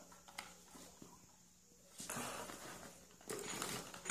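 Faint handling noises: light knocks and rustling as a power cord, small electric blower and plastic inflatable are moved about on the floor, with a near-silent stretch about a second in.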